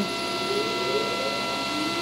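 SawStop cabinet table saw running steadily at full speed, a hum made of several fixed tones. A dust collector motor starts up with a faint rising whine, switched on automatically by the iVAC current sensor on the saw's power cord.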